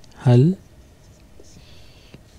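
A felt-tip marker scratching faintly on paper as a word is handwritten, mostly in the second half. A single spoken word is the loudest sound, just after the start.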